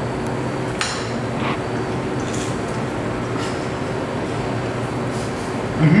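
A few light clinks of a fork and knife on a ceramic plate as food is cut, over a steady low room hum.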